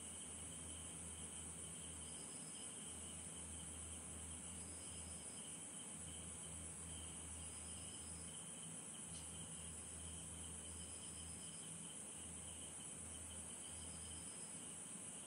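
Faint steady background noise: a constant high hiss over a low, slightly pulsing hum, with a faint short high tone every couple of seconds.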